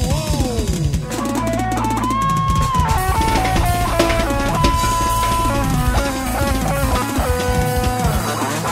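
Live band music in an instrumental passage: a drum kit and bass under a lead melody that steps from note to note, settling on a long held note near the end.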